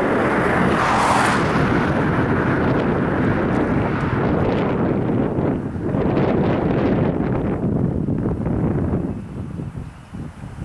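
Wind buffeting the microphone: a loud, fluttering rumble that eases off near the end.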